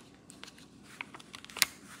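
Light handling of a diamond painting's clear plastic cover film, with a few faint clicks and one sharper tick about one and a half seconds in.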